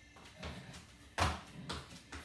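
Feet landing and pushing off an exercise mat during jumping knee strikes: a few dull thuds, the loudest a little past halfway.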